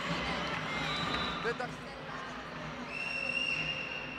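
Indoor volleyball rally in play: crowd noise in the hall with faint voices. A steady high whistle starts about three seconds in and is held for over a second.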